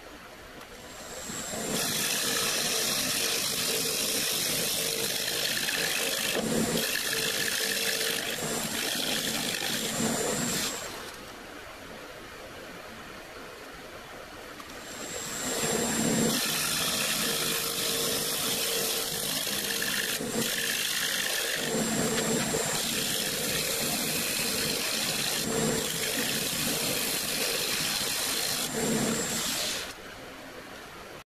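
Wood lathe turning a silver maple blank: a steady motor hum under the loud hiss of a turning tool cutting the spinning wood. The cutting eases off for a few seconds in the middle, resumes, and stops just before the end.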